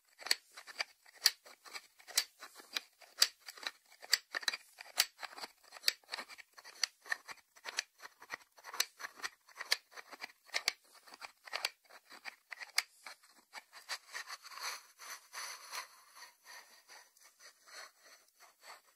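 Fingers tapping on the lid of a white ceramic salt dish: sharp, irregular clicks, a few a second. Near the end the taps thin out into a few seconds of scratchy rubbing against the ceramic.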